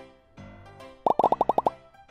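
A quick run of about eight cartoon plop sound effects, one right after another, about a second in, over soft background music. It is the sting of an animated channel logo.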